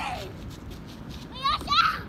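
Small children's high-pitched voices calling out while playing: a falling call at the start, then louder, higher calls about one and a half seconds in.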